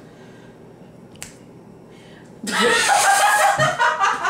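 Quiet room tone with one short click about a second in, then a loud burst of people laughing from about two and a half seconds.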